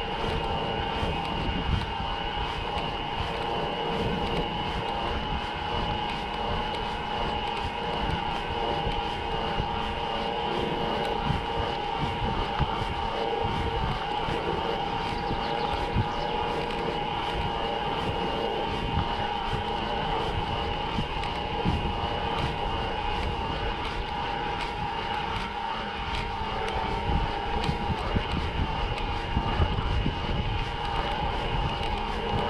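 Mountain bike rolling on a paved lane, heard through an action camera's microphone: uneven wind and tyre rumble, with a steady high whine on top.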